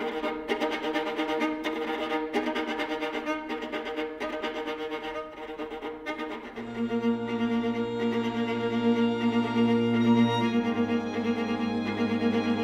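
String quartet playing: quick, repeated short bowed notes for about the first half, then sustained held chords over a low cello note, the harmony shifting once near the end.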